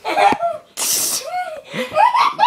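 People laughing in short bursts, broken about a second in by a brief, sharp hissing burst of breath.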